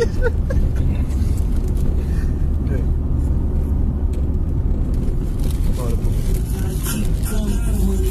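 Steady low rumble of a car's engine and road noise heard from inside the cabin, from the back seat.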